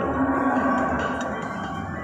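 Ainsworth slot machine's electronic win-tally music as the bonus payout counts up on the win meter: several held tones that slowly fade.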